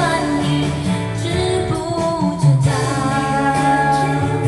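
A woman singing a Mandarin pop song over a backing track with guitar.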